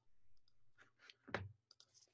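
Near silence with a few faint, scattered clicks from a computer mouse, one a little louder just past the middle.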